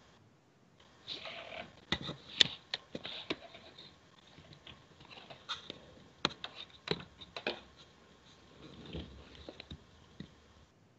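Scattered faint clicks and knocks with short bursts of rustling, with no voice: the Skype call's audio has dropped out mid-interview, leaving only small handling noises from the stream's end.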